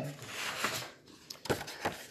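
Paper and cardstock being handled on a tabletop: a rustling slide, then a couple of light taps about a second and a half in.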